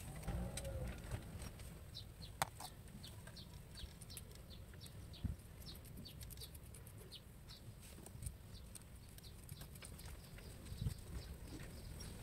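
Faint birds chirping in short, high peeps, many times over, with a few sharp clicks from small parts being handled.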